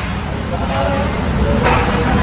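Steady workshop background hum, with indistinct voices near the end.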